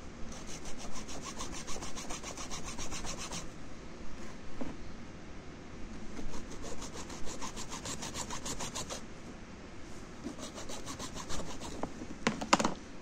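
Small hacksaw cutting through the plastic casing of a water-purifier filter cartridge in quick, regular strokes. The sawing comes in three spells with short pauses between.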